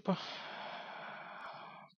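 A man's long, even breath out into a close microphone, lasting almost two seconds, between spoken phrases.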